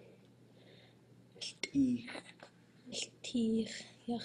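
A man's voice speaking Tlingit in short utterances after a quiet second or so, with a faint whispery breath near the start.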